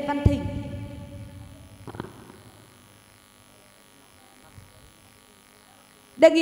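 A voice holding its last syllable, which fades out with an echo over the first couple of seconds; a single knock about two seconds in; then a quiet pause of room tone.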